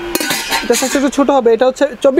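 Stainless steel lid clinking and scraping against the rim of a stainless steel cooking pot as the pot is handled and tilted, with a sharp metal knock just after the start.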